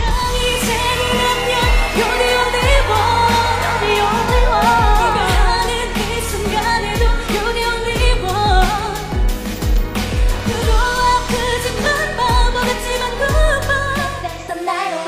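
K-pop dance track with a woman singing over a steady drum beat.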